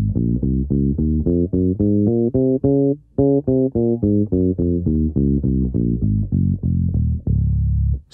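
Five-string electric bass playing a D-flat major scale over two octaves, one plucked note after another at about three or four notes a second. It climbs to the top note about three seconds in, then after a short break steps back down, ending on a held low note near the end.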